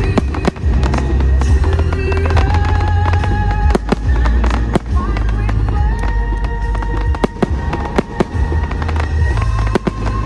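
Fireworks going off in quick, irregular succession: many sharp bangs and crackles. Loud music with held sung notes and a heavy low end plays underneath.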